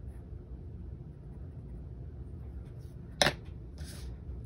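Light colored-pencil strokes on sketchbook paper over a low steady hum, with one sharp click a little after three seconds in.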